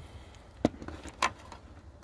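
Two sharp metallic clicks about 0.6 s apart from a socket extension, thumb-wheel spinner and ratchet being handled.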